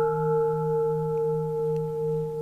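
A sustained ringing bell tone with several steady overtones, wavering slowly in loudness.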